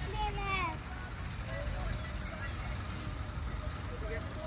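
A child's high voice calls out briefly at the start, then fades under a steady low outdoor rumble.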